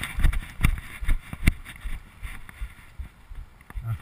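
Rubbing and knocking on a chest-mounted action camera as the wearer moves and turns: irregular knocks and scuffs with low rumble, one sharp knock about a second and a half in.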